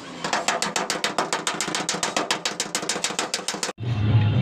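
A panel-beating hammer taps rapidly on the sheet-metal roof of a Hyundai Shehzor cab along a welded seam, in an even run of sharp metallic blows at about eight a second. It cuts off suddenly near the end.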